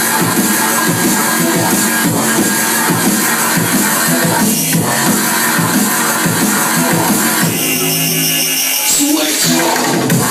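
Drum and bass played loud by a DJ on club decks, a dense fast beat over deep bass. About seven and a half seconds in, the low bass drops away for over a second, then the full mix comes back just before the end.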